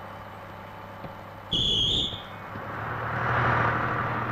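Bus engine running low and steady, broken about a second and a half in by a short shrill whistle blast, the conductor's signal to start. The engine then rises as the bus pulls away.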